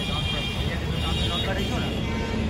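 Street traffic noise: a steady low rumble of vehicles with a thin high whine over it and indistinct men's voices.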